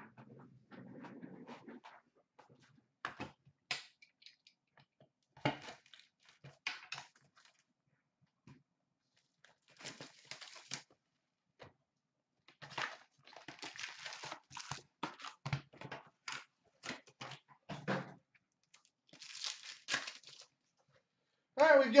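A cardboard hockey-card hobby box being torn open by hand and its foil packs ripped and crinkled, in short irregular rasps with small clicks of cards and packs being handled.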